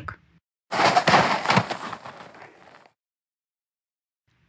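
A sudden heavy thump with a rushing noise that fades away over about two seconds. It is a sound effect of the black grouse plunging from a birch into deep snow.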